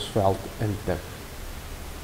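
A man's voice speaking for about the first second, then a steady background hiss.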